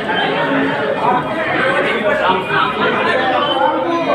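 Many people talking at once: a steady babble of overlapping voices in a large hall.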